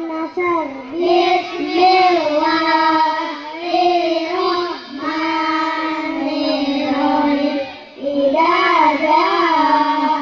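A group of young boys singing together in unison into microphones, one melodic line of long held notes, with a short break about eight seconds in.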